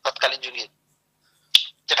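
A man speaking in Bengali, breaking off for about a second, with one sharp click just before he starts speaking again.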